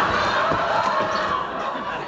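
Studio audience laughing, tailing off toward the end.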